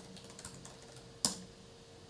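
Typing on a computer keyboard: a few light keystrokes, then one louder key press about a second in as the command is entered.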